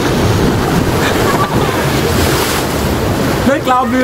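Loud, steady rush of sea surf mixed with wind buffeting the microphone, with a short burst of voice near the end.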